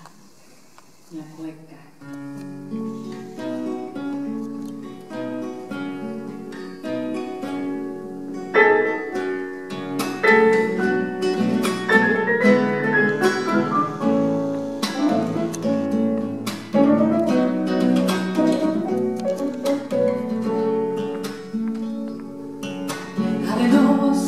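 Instrumental introduction on nylon-string classical guitar and grand piano. Picked guitar notes begin about two seconds in, and from about eight seconds in the playing turns fuller and louder with piano, building steadily.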